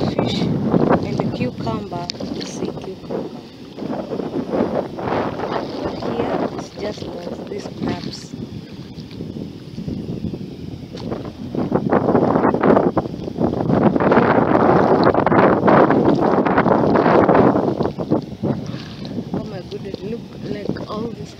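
Sea water surging and washing over the shore at low tide, with wind on the microphone. The loudest surge comes about twelve seconds in and lasts around six seconds.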